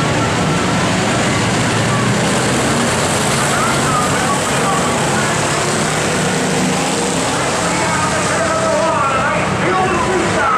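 A pack of dirt-track stock cars racing, many engines running together at speed in a steady, loud wash, with voices mixed in.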